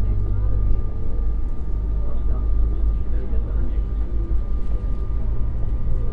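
Steady low rumble of a moving road vehicle heard from inside, with a thin steady high tone above it and people talking indistinctly.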